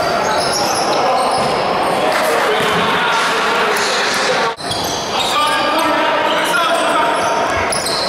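Basketball game in a sports hall: a ball bouncing on the wooden floor and shoes squeaking, under players and spectators shouting and calling, all echoing in the large hall. The sound breaks off briefly a little past halfway.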